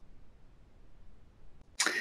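Faint room tone in a pause between a woman's spoken sentences, ending in a short, noisy intake of breath just before she speaks again.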